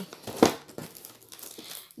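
Plastic shrink-wrap on boxed Kaiak colognes crinkling and rustling as the boxes are handled and pulled out of a cardboard box, with one sharp, louder crackle about half a second in.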